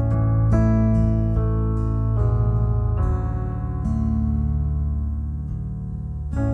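Soft instrumental worship music: acoustic guitar strumming a new chord about once a second over a steady, low sustained keyboard pad.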